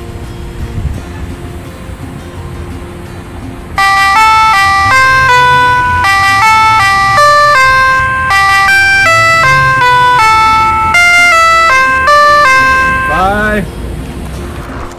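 A handheld electronic toy megaphone plays a loud melody of stepped electronic beeps, starting about four seconds in and running for about nine seconds, ending in a short rising glide.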